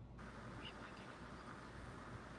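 Faint steady hiss of room noise that comes on abruptly just after the start, with no distinct event in it.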